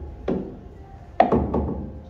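Billiard balls knocking on a pool table: one knock about a quarter second in, then a sharp, louder knock a little after a second followed by a quick run of smaller knocks that fade.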